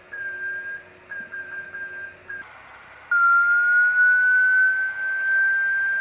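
Morse-code tone of a one-transistor crystal-controlled CW transmitter with a large HC6 crystal, heard as a receiver beat note. First come a few short keyed tones. From about three seconds in there is a louder, long key-down tone that starts lower and slowly drifts up in pitch.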